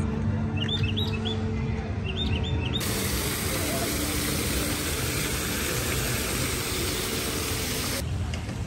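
Small birds chirping briefly. About three seconds in, a steady rush of water falling down a wall fountain starts suddenly and continues.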